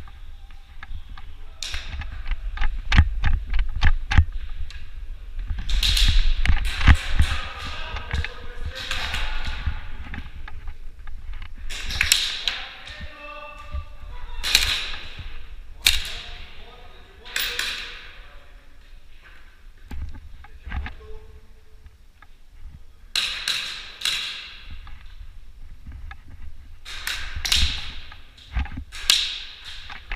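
Indoor airsoft skirmish: many sharp snaps and taps of airsoft guns firing and BBs hitting plywood and cardboard barriers, with heavy footfalls and thumps. Several louder bursts of noise and some shouted voices are mixed in.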